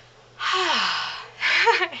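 A woman's sigh: a loud breathy exhale with her voice falling in pitch, about half a second in, followed by a shorter breathy voiced breath near the end.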